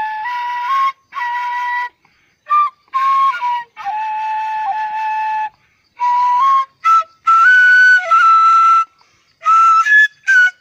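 Homemade bamboo flute playing a slow melody of long held notes in short phrases, with brief silent breaks between them. The notes move higher in the second half.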